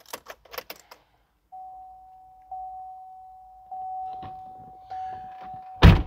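A 2013 Chevrolet Camaro ZL1's cabin warning chime sounding as the ignition is switched on: a steady single tone struck again about once a second, five times. Before it there are a few light clicks and rustles, and a sharp knock just before the end is the loudest sound.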